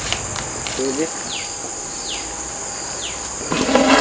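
A steady high-pitched insect drone with three short descending bird whistles, evenly spaced under a second apart. Near the end a louder, noisy sound starts.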